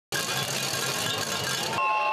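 Dense, loud noise from a crowd of demonstrators. Near the end it cuts to steady blasts from whistles.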